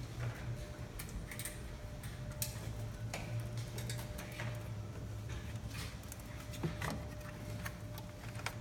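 Scattered light clicks and taps of hands handling plastic body panels and wiring on a side-by-side, over a steady low hum.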